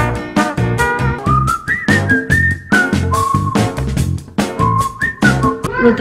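Upbeat swing-style background music with a steady quick beat and a whistled melody of held, sliding notes.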